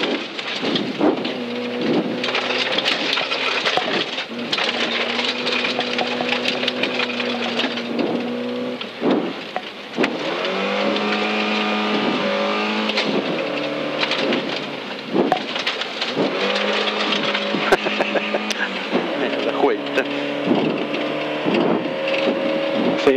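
Volvo 940 rally car's engine heard from inside the cabin under hard acceleration on a gravel stage. Its pitch climbs and drops repeatedly with gear changes and corners. Loose gravel crackles and clatters against the tyres and underbody throughout.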